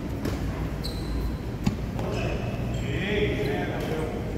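Badminton rally on an indoor court: racket strikes on the shuttlecock and players' footfalls, with one sharp hit about one and a half seconds in.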